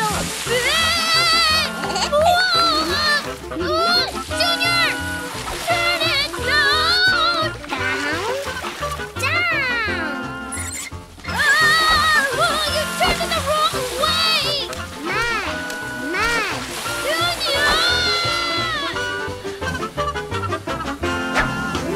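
Cartoon background music over the hiss and splash of a garden hose spraying water at full pressure from a tap opened too far, with wordless child voices crying out.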